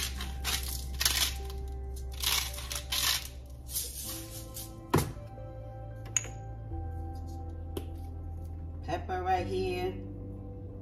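Salt and pepper being added to a pot of soup: four or five quick crackly bursts in the first three seconds, over background music with a low bass line. A single sharp click comes about five seconds in.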